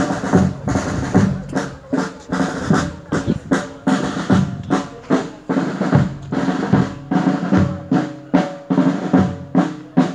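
Marching band drums, snare and bass drum, beating a steady funeral march at about two strokes a second, with held musical notes sounding underneath.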